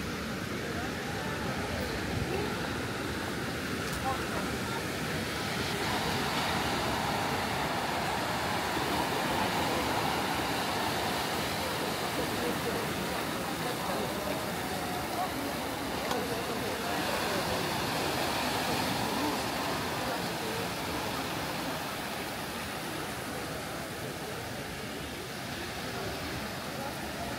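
Surf from a rough sea breaking on a rocky shore: a steady wash of waves, swelling a little in the middle and easing toward the end.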